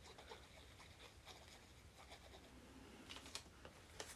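Near silence with faint rustling and light ticks from small paper cutouts and a plastic glue bottle being handled, with a few sharper ticks about three seconds in.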